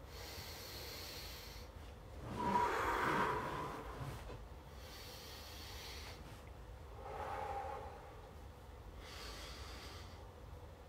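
A man breathing deeply in and out while recovering between strenuous exercise holds: about five slow, audible breaths with pauses between them, the loudest a little over two seconds in.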